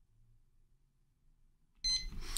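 Near silence, then just before the end a short high-pitched beep as room sound comes in suddenly.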